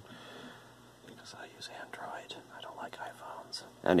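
Faint whispering under the breath, soft and breathy, with no full voice.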